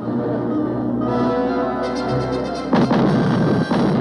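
Dramatic background music with held chords, then, a little under three seconds in, a loud explosion as an ammunition dump blows up. A second blast follows about a second later, and its rumble continues to the end.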